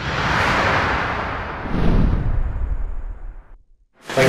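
Intro sound effect: a noisy whoosh that swells up, then a deeper boom-like surge about two seconds in, dying away before the end.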